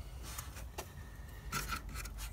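Faint rubbing and scraping handling noise from a hand-held phone being moved around, with a few soft clicks.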